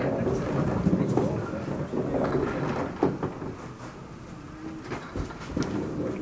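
Candlepin bowling alley ambience: a low, steady rumble with faint indistinct voices behind it, quieter a little past the middle.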